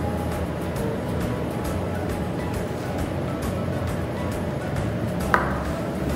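Background music over light, repeated clinks of a metal teaspoon stirring water in a glass tumbler, with one sharper click near the end.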